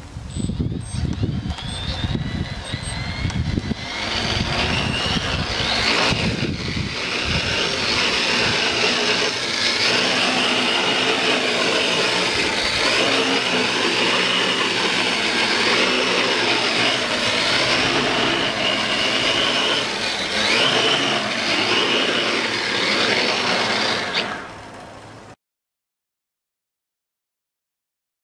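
A quadcopter's four 2212 brushless motors with 10-inch propellers spin up with a rising whine, then run loudly in flight. Their pitch wanders up and down as the throttle and flight controller correct. Wind buffets the microphone in the first few seconds, and the sound drops and cuts off suddenly near the end.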